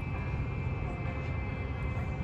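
Steady low hum with a faint, thin high-pitched whine from a DC fast-charger cabinet. The cable-cooling coolant pump has not kicked on, the sign of a session stuck charging slowly.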